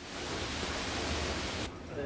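Steady hiss of heavy rain falling, which stops abruptly near the end.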